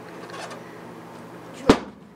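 An egg-drop test box, a see-through box packed with blankets and stuffing around an egg, hits a hard floor after being dropped from the stairs: one sharp smack about a second and a half in.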